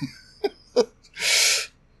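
A man's brief chuckle: two short laughing sounds, then a loud breathy exhale lasting about half a second.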